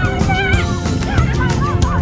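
High, wavering shouts and squeals from children running, over background music with held notes and a low beat.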